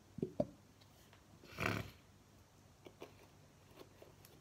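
Aerosol shaving-cream can dispensing foam: a short hiss about a second and a half in, preceded by a couple of light clicks from handling the can.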